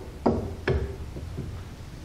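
Two light knocks, about half a second apart, then faint handling noise, as a hot glue gun is handled at the lathe.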